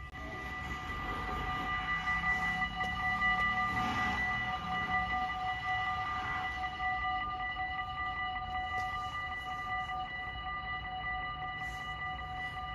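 Warning bells of a Dutch automatic half-barrier (AHOB) level crossing start up and keep ringing rapidly and steadily, signalling that a train is approaching.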